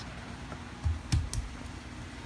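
A few soft low thumps about a second in, with two short sharp clicks just after: movement and handling noise in a quiet room.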